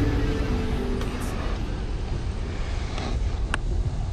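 Steady low rumble of ocean surf, with a faint sharp tick about three and a half seconds in.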